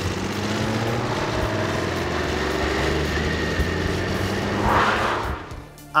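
Aprilia Caponord 1200's 90-degree V-twin engine running steadily under way, heard from a camera mounted near the front wheel. A brief rush of noise comes about five seconds in, then the sound fades out.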